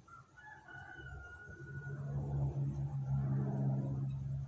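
A drawn-out pitched animal call in the first second and a half, then a low steady hum that grows louder and is the loudest sound by the end.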